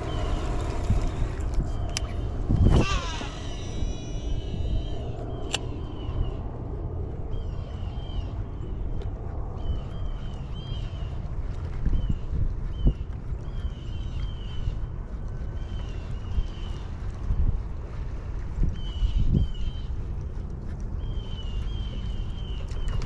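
Low, steady rumble of wind on the microphone while fishing from a boat. A few seconds in, a knock is followed by a whirring whine of rising and falling pitch, typical of a cast spinning line off a baitcasting reel. After that comes a string of short, faint high chirps about once a second.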